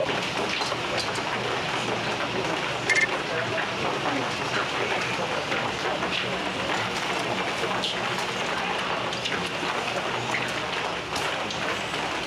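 Steady rain falling on a wet street, an even hiss throughout, with one brief sharp sound about three seconds in.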